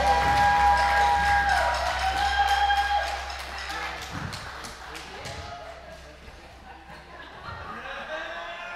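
A live country band and male singer ending a song on a long held sung note over a sustained chord, which stops about three seconds in. After that, only quieter hall sound remains.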